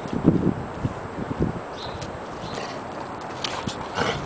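Irregular soft footsteps and shuffling of a boxer dog and a person walking on concrete, with a cluster of bumps near the start.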